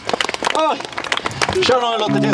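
Voices calling out briefly between songs, one about half a second in and another near the end, over scattered sharp clicks and knocks.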